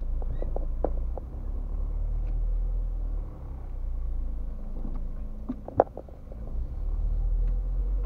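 Low, steady rumble of a car idling in slow traffic, heard from inside the cabin, with a few scattered light clicks and one sharper click about six seconds in.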